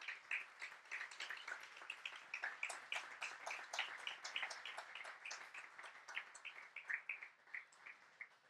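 A small audience applauding faintly, many hands clapping at once, thinning out and stopping near the end.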